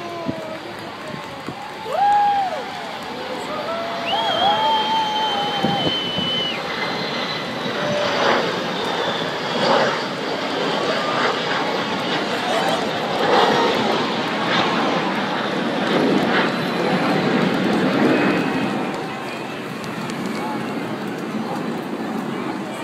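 Jet engine noise of the Boeing 747 Shuttle Carrier Aircraft flying low past, growing louder after a few seconds and holding steady, with spectators' voices and a long high whistle over it.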